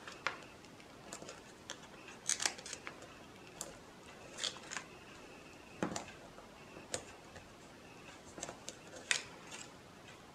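Faint rustling and scattered small clicks of a clear plastic backing sheet and paper card being handled as foam adhesive dots are peeled off and pressed onto a paper tag.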